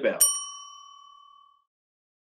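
Bell "ding" sound effect for a notification-bell button: a click and one bright ring about a fifth of a second in, fading away over about a second and a half.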